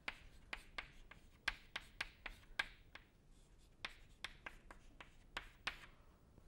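Chalk writing on a blackboard: an irregular run of quick taps and short scratches, several a second.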